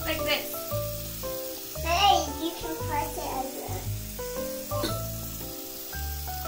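Tap water running into a sink as bath bombs fizz in it, under background music with sustained notes, with a few brief children's voices.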